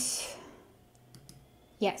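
A few faint clicks at a computer about a second in, between the breathy trailing-off of a spoken word at the start and a woman's speech resuming near the end.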